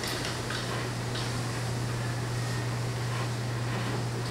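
Steady low electrical hum with an even hiss from the stage's microphone and sound system, with a few faint soft rustles in the first second or so.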